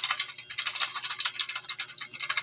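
Raffle entry slips rattling inside a plastic bottle as it is shaken hard to mix the names, a fast irregular clatter.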